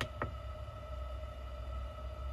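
Two short button clicks at the very start, a fraction of a second apart, from the soft keys on a GRT Avionics EFIS bezel, over a steady electrical whine and low hum.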